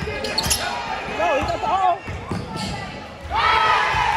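Basketball being dribbled on a hardwood gym floor, its bounces echoing in a large gym.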